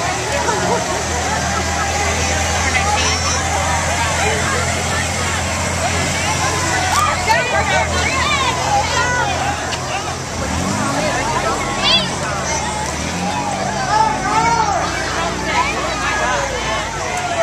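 Crowd of parade spectators chattering, over the low steady hum of slow-moving utility vehicle engines passing at walking pace. The engine hum fades about ten seconds in while the crowd voices go on.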